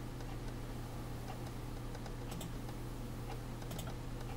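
A few faint clicks of computer controls, a pair a little past halfway and another pair near the end, over a steady low electrical hum.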